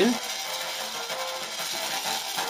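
Singing arc from a high-voltage flyback transformer: the electric arc hissing steadily while faintly reproducing the audio fed to its driver, with some distortion.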